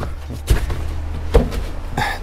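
Two dull knocks about a second apart as full plastic fuel jugs are grabbed and shifted against each other and the cargo floor of a car, over a steady low rumble.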